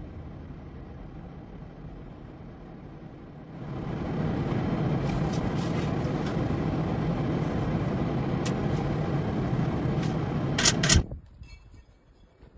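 Car driving on a snowy road, heard from inside the cabin: steady engine and road noise that grows louder about four seconds in. A few light clicks, then two loud knocks just before the sound cuts off.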